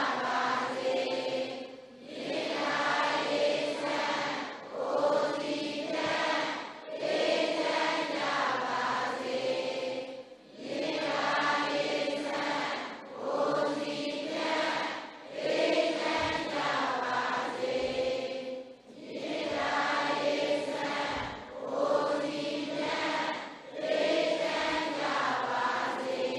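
A large congregation chanting a Buddhist recitation in unison, in short phrases of about two seconds with brief breaks between them.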